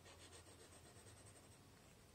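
Faint scratching of a graphite pencil on drawing paper as a signature is written, dying away after about a second.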